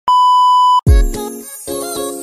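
Television colour-bar test-pattern tone, used as an editing transition: one steady, high-pitched beep lasting just under a second that cuts off abruptly. Music with a deep kick drum starts right after it.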